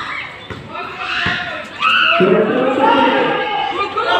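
Players and spectators shouting and calling out over one another during a basketball game, growing louder and busier about halfway through. A single basketball bounce on the concrete court sounds about a second in.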